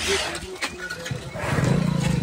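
Water buffalo giving a loud, low, drawn-out bellow that starts about one and a half seconds in, after a short breathy rush at the start.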